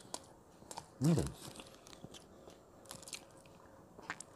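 A man chewing a mouthful of toasted bread with soft, scattered mouth clicks and smacks, and a short closed-mouth "hmm" of enjoyment about a second in.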